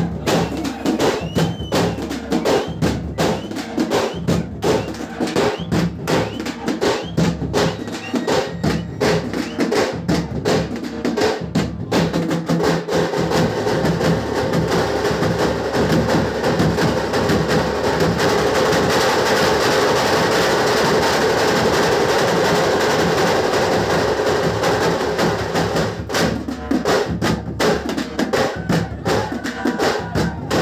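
Fast, loud drumming with rapid, even strikes. Midway the strikes merge into a steady, dense din for several seconds, then the separate beats return near the end.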